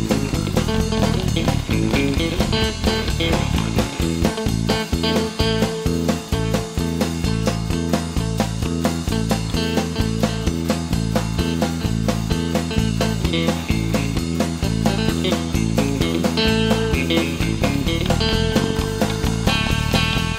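Instrumental passage of a gospel song played by a band: lead guitar over a bass alternating between two low notes, with drums keeping a steady beat.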